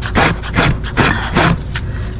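Hoof rasp filing a horse's hoof: about five rasping strokes, a little over two a second.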